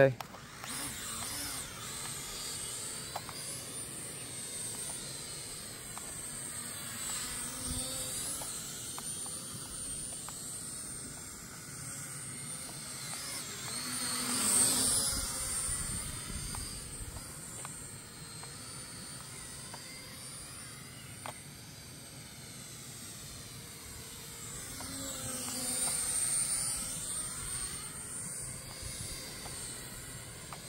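K3 E99 toy quadcopter drone flying: the high, thin whine of its small propellers wavers up and down as it climbs and manoeuvres, swelling loudest about halfway through as it comes close, and again near the end.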